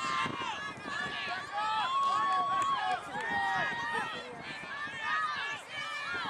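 Many voices shouting and calling over one another at once, with a few long held shouts, none of it clear enough to make out words.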